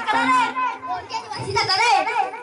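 Children's voices talking and calling out.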